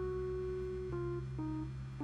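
Background music: a slow melody of held notes stepping down in pitch over a steady low bass.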